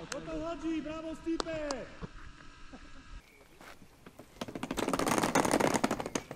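Shouts of football players on a training pitch with a few sharp knocks. Then, from about four seconds in, a dense rattling clatter of a wheeled suitcase rolling over paving stones.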